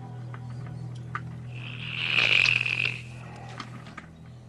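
Film soundtrack: a steady low drone with a few faint clicks, and a loud rasping hiss that swells up about a second and a half in and dies away by three seconds.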